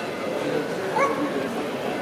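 A small dog gives one short, rising yip about a second in, over the steady chatter of a crowd in the square.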